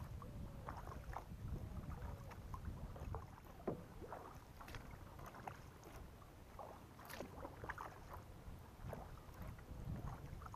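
Kayak paddle strokes: soft splashes and water dripping from the blades, with a few sharper splashes, over a low steady rumble.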